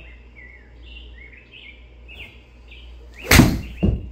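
A golf iron striking a ball off a turf hitting mat: one sharp strike about three and a half seconds in, followed about half a second later by a second, duller thump. Faint bird-like chirps run throughout.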